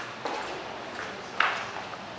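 Footsteps on a tiled hallway floor: a few short steps, the last one the loudest.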